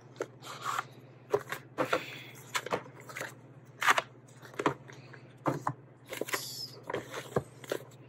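Paper notebooks being pulled out of a leather notebook cover: a string of short, irregular scrapes and rustles from the handled paper and leather, over a low steady hum.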